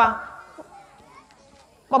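A short pause in a man's amplified speech, with faint children's voices in the background. His voice trails off at the start and comes back near the end.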